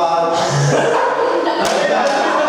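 Voices in a large hall, among them a man speaking over a microphone, with a burst of noisy sound about half a second in and a sharp thump about a second and a half in.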